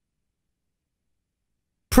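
Dead silence with no room tone, as if the audio were gated off; a man's voice cuts in abruptly just at the very end.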